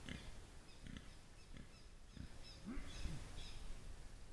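Faint short animal calls, several in a row, each rising and falling in pitch.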